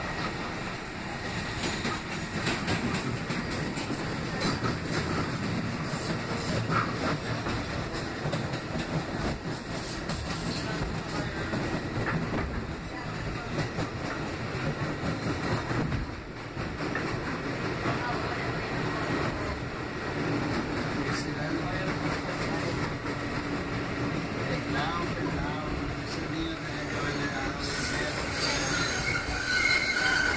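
Kawasaki R188 subway car running along the track, heard from inside the car: a steady rumble and rattle of wheels on rail with some clicking of rail joints. Near the end, high steady squealing joins in as the wheels take a curve.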